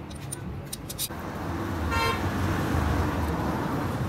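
A motor vehicle passing close by, its rumble rising about a second in, with a short horn toot about two seconds in.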